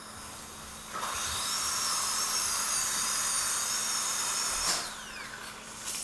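High-speed dental handpiece with a bur grinding a zirconia implant abutment to adjust its occlusion: a steady high whine that starts about a second in and winds down with a falling pitch near the five-second mark.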